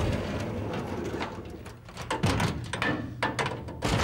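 Heavy metal aircraft cargo door being swung on its hinges with a pole, giving a low creak and several sharp metallic knocks.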